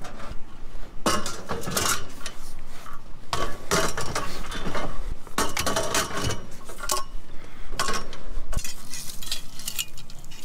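Bent, rusty scrap steel tubing clanking and rattling as it is handled and loaded, in several bursts of metallic clatter.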